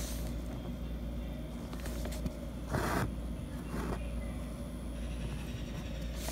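Embroidery thread being drawn through fabric stretched in a hoop while making long satin stitches: a brief scraping pull about halfway through and a fainter one about a second later, over a steady low hum.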